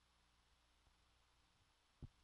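Near silence: only a faint steady hiss with a low hum.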